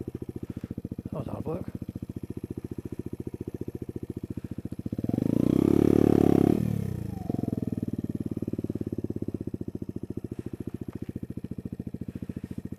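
Sinnis Blade trail motorcycle's engine running at low revs with a steady firing pulse, revved up sharply about five seconds in and falling back after about two seconds, then running steadily again.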